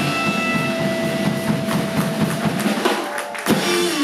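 Live blues trio playing: a Berly electric guitar, a drum kit and an electric bass. The guitar holds one long note over busy drumming, and a loud hit lands about three and a half seconds in.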